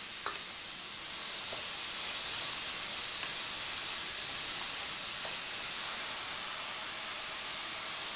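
Chopped vegetables and potato cubes sizzling as they fry in oil in an aluminium pressure cooker, stirred with a spatula: a steady hiss that swells slightly in the middle.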